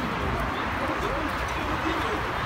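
Busy street ambience: passers-by talking, a low traffic rumble and birds cooing, all at a steady level.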